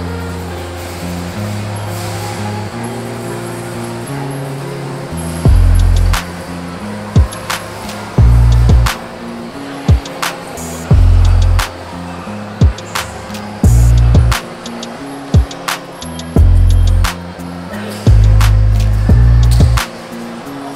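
Background music: an electronic pop track with held bass notes that step in pitch, joined about five seconds in by heavy bass hits and a sharp, regular beat.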